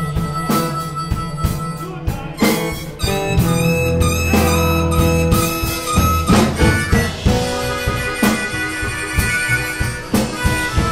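Live band with a harmonica leading, played cupped into a vocal microphone, over a drum kit, acoustic guitar and electric bass.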